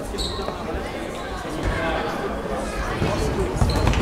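A referee's whistle gives a short blast just after the start. Then a futsal ball thuds on the sports-hall floor, with players' and spectators' voices echoing in the hall.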